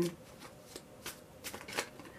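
Tarot cards being handled in the hands: a few soft, scattered flicks and taps, the loudest near the end.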